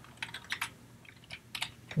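Computer keyboard being typed on: a handful of light, irregularly spaced keystrokes.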